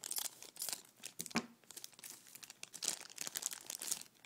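A collectible figure's wrapper being torn open by hand: dense crinkling and tearing, with one sharper crack about a third of the way in, stopping abruptly at the end.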